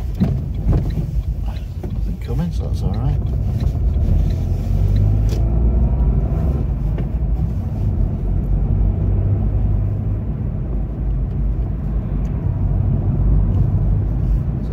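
Car engine and road noise heard from inside the cabin while driving, a steady low drone.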